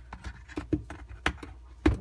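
A handful of light clicks and taps from a hand handling the dishwasher's plastic spray-arm assembly and its clips, the last one the loudest just before the end.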